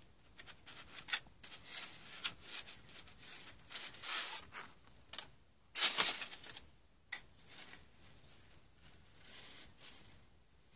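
Painted paper sheets rustling and sliding against each other as they are handled, in irregular scraping bursts. The loudest comes about six seconds in.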